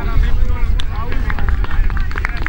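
People's voices talking and calling out in the open air over a steady low rumble of wind on the microphone.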